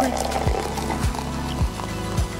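Background music with a steady bass-drum beat, about two beats a second.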